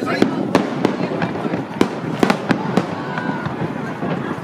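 Fireworks shells bursting overhead: a string of about ten sharp bangs over four seconds, some coming in quick pairs.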